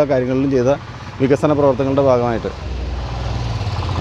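A man speaking briefly, then from about halfway a motor vehicle's engine sets in close by, a low rumble with a fast, even pulse that grows louder.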